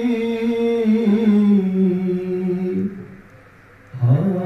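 A man's voice singing into a handheld microphone, holding long drawn-out notes with slow turns in pitch. The line ends about three seconds in, followed by a brief pause.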